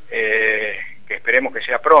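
Speech only: a person talking over a narrow, telephone-quality line.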